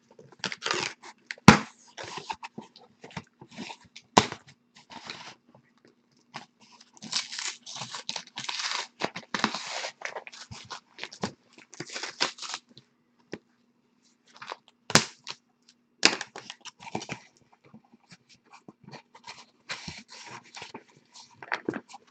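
Packaging being torn and crinkled as a sealed case of trading-card boxes is opened: irregular bursts of tearing and rustling, with sharp knocks about 1.5, 4 and 15 seconds in.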